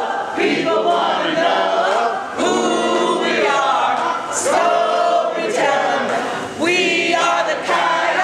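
A group of women singing a chant together in unison, in short phrases with brief pauses between them.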